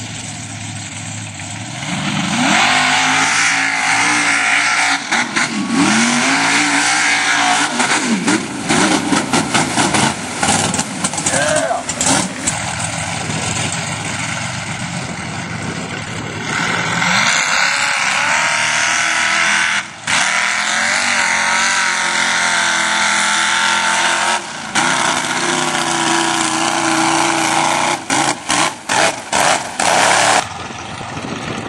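Big-engined mud-bog truck running loud, its engine revved up and down several times.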